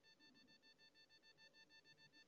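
Near silence, with only a very faint steady high-pitched tone in the background.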